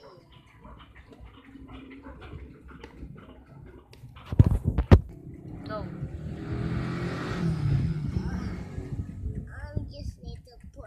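Toys being handled on a hard floor: two sharp knocks about four and a half seconds in, then a few seconds of rough rustling noise. Faint child murmuring runs through the first few seconds.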